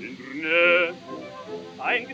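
Male operatic voice singing with heavy vibrato on a 1915 acoustic-era record, a loud held note about half a second in followed by short sung syllables, over orchestral accompaniment. The sound is narrow, with little above about 4 kHz, and a faint hiss from the old disc.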